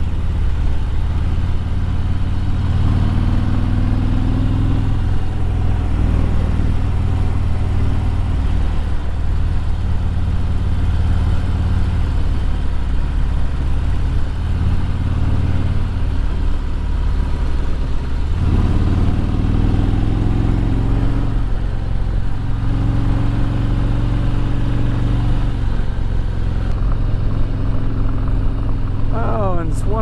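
Harley-Davidson Road Glide's V-twin engine pulling steadily under way, its pitch climbing a few times as the throttle opens, under a steady rush of wind and road noise.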